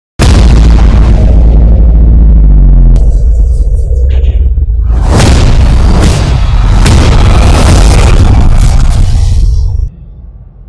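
Intro sting for an animated logo reveal: loud, deep booming impacts over music, with a sharp crack about three seconds in and a rushing burst with several sharp hits from about halfway. It cuts off abruptly near the end, leaving a fading tail.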